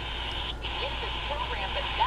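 C. Crane CC Pocket radio's built-in speaker playing a weak AM station: a steady static hiss with a faint broadcast voice coming through it.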